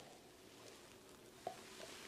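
Near silence: faint room tone, with a single soft click about one and a half seconds in.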